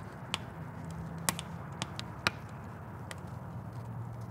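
Campfire crackling: scattered sharp pops at irregular times, over a faint low steady hum.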